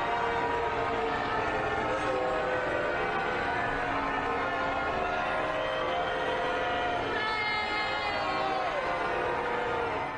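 Church bells pealing steadily over a crowd booing.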